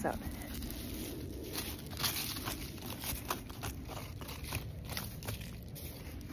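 Dry fallen leaves crinkling and crunching as a hand scrapes through the leaf litter on the forest floor, in a string of short irregular crackles.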